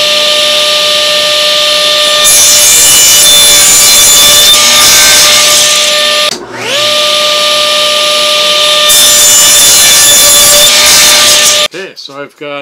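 Table saw running with a steady whine, cutting through a stack of wooden boards twice: each cut is a loud stretch of sawing over the motor, the first starting about two seconds in and the second about nine seconds in. The sound breaks off abruptly just before the end.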